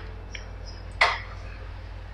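A single short, sharp click or clack about a second in, over a steady low hum.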